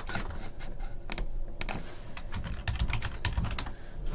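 Computer keyboard being typed on, a quick, irregular run of keystrokes.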